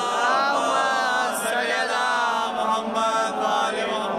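A man chanting in long, drawn-out melodic notes that glide up and down in pitch, breaking from spoken delivery into a sung recitation.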